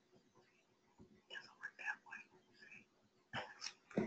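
Faint, soft speech away from the microphone, low and whispery, in short phrases between near-silent pauses. It grows louder just before the end.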